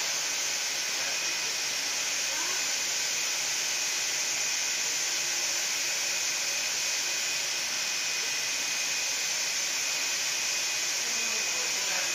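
UV LED flatbed printer running mid-print: a steady airy whirring hiss with a faint high steady whine, as the printhead carriage sweeps across the bed.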